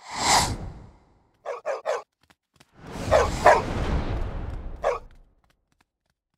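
A swoosh, then three quick dog barks about a second and a half in, followed by a longer rushing sound with louder barks in it that dies away about five seconds in.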